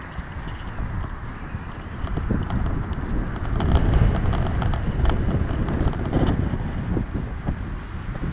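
Wind buffeting the phone's microphone in a strong, steady low rumble, with scattered light clicks in the middle of the stretch.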